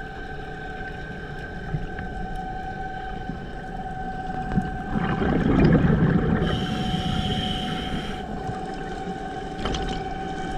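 Underwater sound picked up by a submerged camera: a steady high whining tone runs under a bed of water noise, and a louder rush of low water noise swells up about halfway through.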